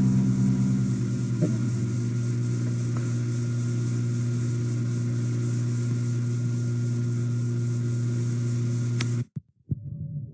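Steady electrical hum with several overtones, over tape hiss, from an old cassette recording. It cuts off abruptly with a click about nine seconds in as the recording ends.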